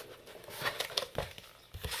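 A hardcover book handled inside a cardboard shipping box: a few light taps and knocks over soft rustling of paper and cardboard.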